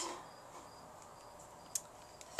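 Faint crickets chirping: short, high-pitched chirps repeating at an even pace. There is a single short click near the end.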